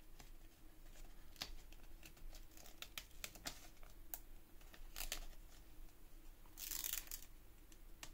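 A Lego sticker sheet crinkling and crackling as fingers handle it, with a short peeling rip about two-thirds through as a sticker is lifted off its backing.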